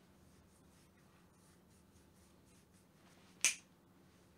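A single sharp finger snap about three and a half seconds in, over a quiet room with a faint steady hum.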